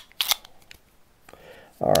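A couple of sharp, small metal clicks from a Phoenix Arms HP22A .22 pistol being handled, about a quarter second in, followed by near quiet.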